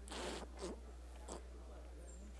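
Three short rasping rustles picked up close to a table microphone: the first, right at the start, is the longest and loudest, followed by two briefer ones over a low steady hum.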